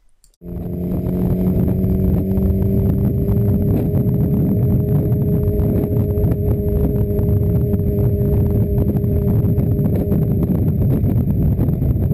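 Motorcycle engine running at a steady cruise under low wind rumble, as picked up by an action camera worn on the rider's back. It comes in about half a second in.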